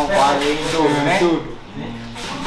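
A man speaking for about a second and a half, then pausing, over a steady scratchy rubbing noise.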